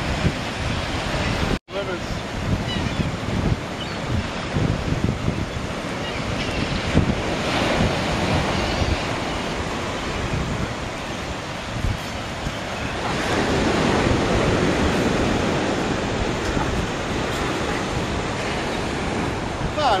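Surf and churning white water rushing steadily, with wind buffeting the microphone; the wash swells louder twice, around the middle and again later. The sound cuts out completely for an instant about a second and a half in.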